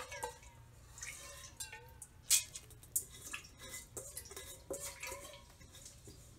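Water being added a little at a time into the steel drum of a stone wet grinder holding soaked rice: scattered small drips and splashes with a few light clinks, the grinder not yet running.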